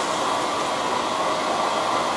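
Steady, even whooshing noise from the hydrographic dip tank's water circulation churning the tank water.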